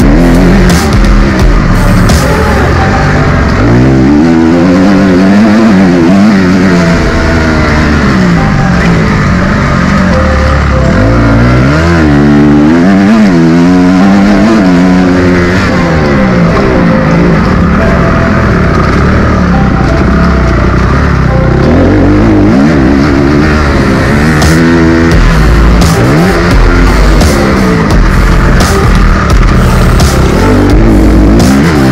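Honda CRF250 motocross bike's four-stroke single-cylinder engine revving up and down again and again as it is ridden hard around a dirt track, with music mixed over it.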